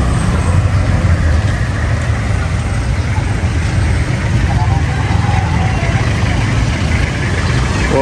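Street traffic: car and motorbike engines running in slow, jammed traffic, a steady low rumble.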